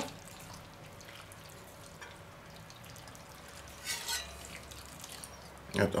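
Vegetable broth poured from a stainless steel bowl over raw broccoli and cauliflower in a clay Römertopf: a faint trickle and patter of liquid running down through the vegetables, briefly louder about four seconds in.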